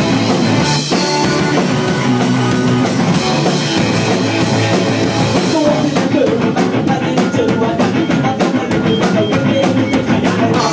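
Live punk rock band playing the instrumental opening of a song: electric guitars, bass and a drum kit, recorded loud on a phone. The drum strokes stand out sharply and evenly from about halfway through.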